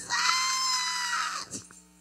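A woman's high-pitched cry into a microphone: one long, held shriek of about a second and a half that eases off at the end. A steady electrical hum runs beneath it.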